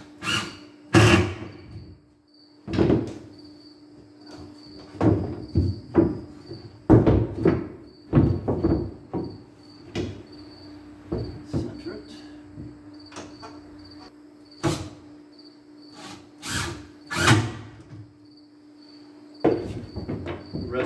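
Wooden stringers and cross pieces knocking and thudding against a fibreglass boat hull as they are set in place: a run of irregular, loud knocks, some in quick clusters. A faint steady hum and an evenly pulsing cricket chirp run underneath.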